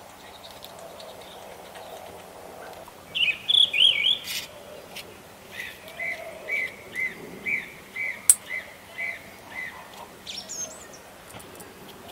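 Small songbird singing: a quick warbled phrase about three seconds in, then a run of short repeated chirps, about two a second. A single sharp click sounds partway through the chirps.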